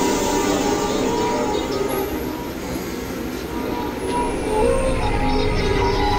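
Experimental electronic drone music: layered synthesizer tones held over a dense, noisy rumble. It grows a little quieter around the middle, then swells back.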